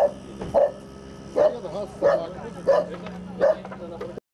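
A dog barking repeatedly: about six evenly spaced barks, roughly one every two-thirds of a second, over a steady low hum.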